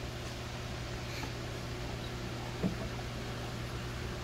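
Steady hum and hiss of running room equipment such as a fan and dehumidifier, with a single faint knock about two and a half seconds in.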